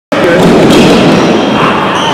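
Basketball dribbled on a hardwood gym floor, a few thuds under a loud mix of voices echoing in the hall.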